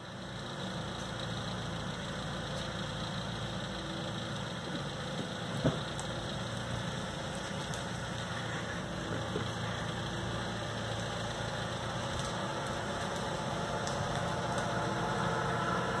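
Engine of a postal delivery truck running at low speed as it creeps up the street, a steady hum growing gradually louder as it comes closer. One short knock about six seconds in.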